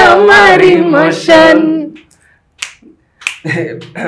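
Unaccompanied voice singing a short phrase for about two seconds, followed by two sharp finger snaps, after which talking starts.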